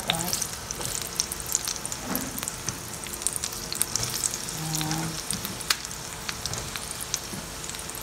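Sliced onions and garlic sizzling and crackling in hot oil in a pot as raw potato chunks are dropped in.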